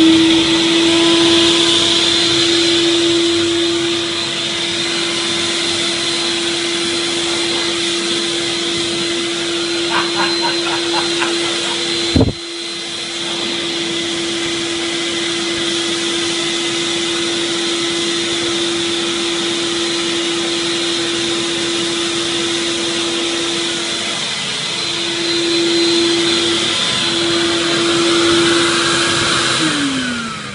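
Sirena System water-filtration vacuum cleaner running steadily: a constant motor whine over rushing air. A sharp click comes about twelve seconds in, and the motor begins to wind down with a falling pitch at the very end.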